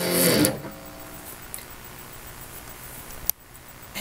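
Behringer Strat-style electric guitar through an amplifier: a played chord is cut off about half a second in, leaving a steady amplifier hiss. A single sharp click comes about three seconds in.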